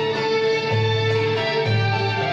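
Arab-Andalusian music ensemble playing live: plucked and bowed string instruments together, holding notes over a low bass line that shifts pitch.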